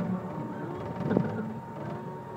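Kiddie ride-on tractor running along its track, a steady hum with one sharp knock a little over a second in.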